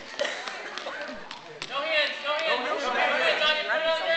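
High-pitched young children's voices chattering and calling, with a few sharp knocks in the first couple of seconds.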